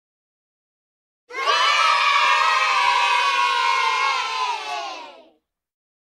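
A group of children cheering and shouting together for about four seconds, starting just over a second in. Their voices slide slightly down in pitch, and the cheer ends with a brief fade.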